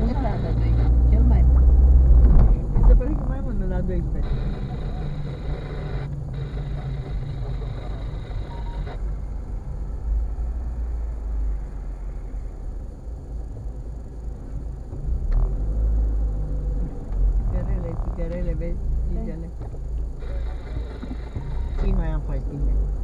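Low, steady rumble of a car's engine and road noise heard inside the cabin while it creeps along in slow traffic, with indistinct voices in the car at times.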